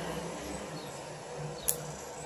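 Outdoor background ambience: a steady hiss with a faint low hum, and one sharp click near the end.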